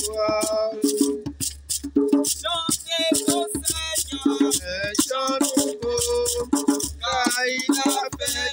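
Voices singing a song to a djembe hand drum played in a steady rhythm, with crisp high strokes keeping time.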